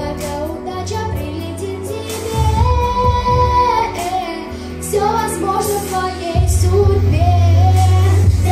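A young girl singing a pop song into a handheld microphone over a backing track, holding one long note about three seconds in. The backing's bass grows stronger and louder about six seconds in.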